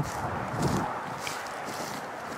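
Steady outdoor background noise with wind on the microphone, a little louder in the first second.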